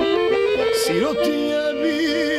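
Accordion playing a folk melody over sustained chords, with a short rising-and-falling melodic turn about a second in.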